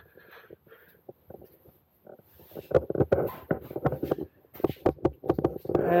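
Quilted moving blanket being pulled off a motorcycle and handled: a fast run of fabric rustles and soft knocks that starts about two and a half seconds in, after a faint start.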